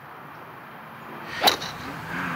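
A golf club striking a teed-up ball on a tee shot: one sharp crack about one and a half seconds in, over a faint steady hiss.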